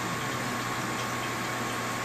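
Steady room tone: an even hiss and low hum with a faint, constant high whine, and no distinct events.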